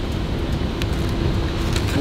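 Outdoor street background: a steady low rumble of road traffic and wind on the microphone, with a faint steady hum underneath.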